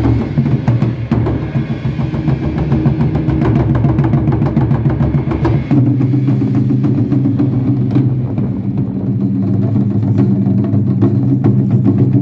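Japanese taiko drums, several rope-laced barrel drums struck with sticks by an ensemble in a fast, continuous rhythm. About halfway through, the deepest rumble drops away.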